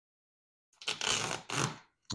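Tape being peeled off a foam seat cushion: two tearing pulls about a second in, after a moment of silence.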